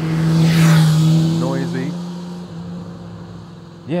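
A motorcycle passing close by on the road, its steady engine note rising to its loudest about a second in and then fading away as it goes past.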